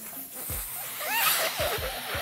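A rubber balloon being blown up by mouth: rushing breath into the balloon that swells after about a second. Short wavering squeaky tones run through it.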